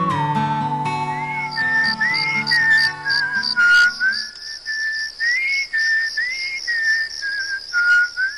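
Closing music led by a whistled melody: a long held note that slides up and back down, then a tune of short notes with quick upward slides, over a steady high pulsing tone. Soft low accompaniment drops out about four seconds in, leaving the whistled line alone.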